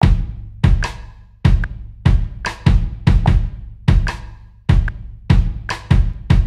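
Kick and snare drum pattern from the Spitfire Labs virtual instrument, played live on a MIDI keyboard at 74 BPM. Deep kick thuds alternate with sharp snare hits. A metronome click sounds on each beat underneath.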